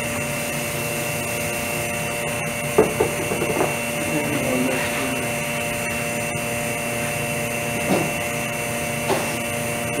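Vacuum pump of a prosthetic lamination setup running with a steady hum, pulling suction on the lamination bag. A few light knocks and taps sit over it, about three seconds in and again near the end.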